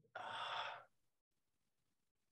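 A single breathy sigh from a man stuck for an answer, lasting well under a second.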